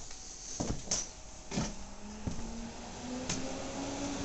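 Scattered knocks and bumps of a handheld camera being moved through a cluttered room, about five in all. A faint steady hum comes in about a second and a half in and rises slightly in pitch.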